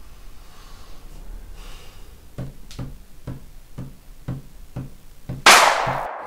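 A soft, steady drum beat of low knocks, about two a second, then a sudden loud whoosh about five and a half seconds in as an outro sound effect begins.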